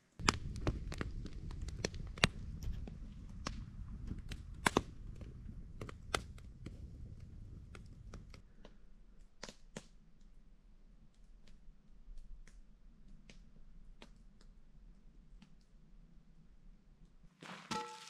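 Campfire crackling: irregular sharp pops and snaps of burning wood over a low rumble, which drops away about halfway through while the pops carry on more sparsely.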